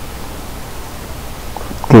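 Steady hiss of background noise, with a man's voice starting right at the end.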